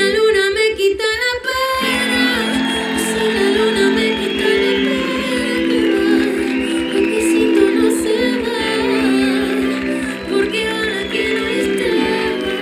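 A woman singing a slow ballad live with vibrato, over sustained instrumental backing with a steady low pulse; the backing changes about two seconds in.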